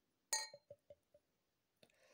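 A glass beer bottle's neck clinks against the rim of a drinking glass: one ringing clink about a third of a second in. A few faint ticks follow as the stout starts to pour into the glass.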